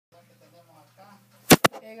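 Two sharp clicks about a tenth of a second apart, over a faint steady low hum.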